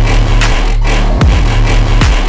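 Electronic dance track playing loud: a heavy, sustained bass line with sharp drum hits cutting through every half second or so.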